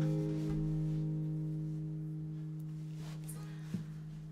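A single strummed chord on an acoustic guitar ringing out and slowly fading, with a light tap near the end.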